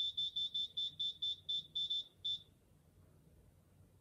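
An Arduino game's buzzer giving about a dozen short, high, same-pitched beeps. They come quickly at first and then further and further apart, stopping a little over halfway through, as the spun hard-drive platter wheel slows to a stop and the score settles.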